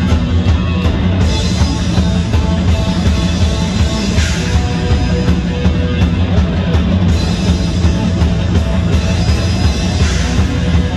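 Live heavy rock band playing loud: distorted electric guitars over a drum kit, with cymbals hit in a steady rhythm.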